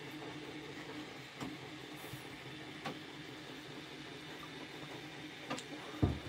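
Quiet room tone with a faint steady hum, broken by three faint clicks about a second and a half, three seconds and five and a half seconds in.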